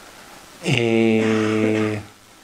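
A man's hesitation filler 'ehh', drawn out for about a second and a quarter on one steady pitch, starting a little after the first half-second.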